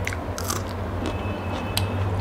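Close-miked biting and chewing, with a crisp crunch about half a second in as a bite is taken from a piece of green vegetable, and a sharp click near the end, over a steady low hum.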